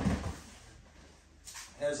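A person rolling across padded training mats: a dull thud of the body landing at the start, with a rustle of clothing that fades within about half a second.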